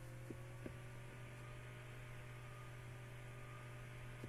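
Low steady electrical hum under faint hiss, with two faint clicks under a second in.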